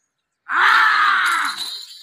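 Men shouting loudly to drive a pair of bulls as they start pulling a weighted load. The yelling cuts in suddenly about half a second in and carries on in long rising-and-falling calls.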